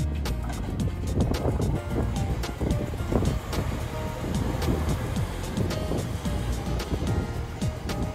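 Background music over a new-model Toei Shinjuku Line electric train running in alongside the platform, with a steady low rumble of wheels on rail.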